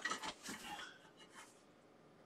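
Light rustling and a few small clicks from small parts being handled by hand on a workbench, mostly in the first second, with a couple of faint ticks after.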